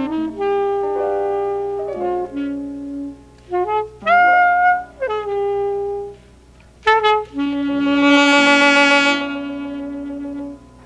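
Alto saxophone playing short jazz phrases separated by brief pauses, then a long held note from a little past the middle that sounds loudest for about a second and a half before easing off but carrying on.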